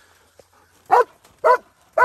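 Belgian Malinois barking at a hog it holds at bay: three sharp barks about half a second apart, starting about a second in.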